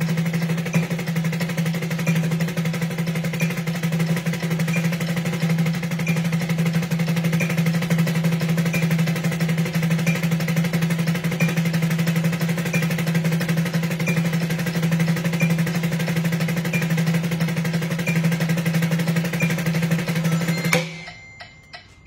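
Snare drum played with sticks in a fast, even, unbroken stream of single strokes: 16th notes at 180 BPM, about twelve strokes a second, from loose wrists. The drum's ring hangs steady under the strokes until the playing stops suddenly near the end.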